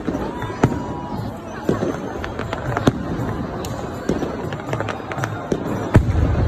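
Aerial fireworks bursting overhead in an irregular run of bangs and crackles, with a brief whistle in the first second.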